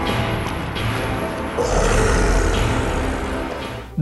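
Film soundtrack: dramatic orchestral music with a creature's deep growling, the low rumble swelling about one and a half seconds in.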